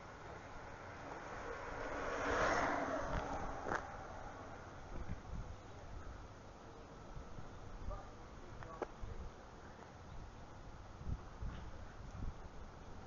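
Wind rumbling on a handheld camera's microphone, with a louder swell of rushing noise about two to three seconds in and a few sharp handling clicks later on.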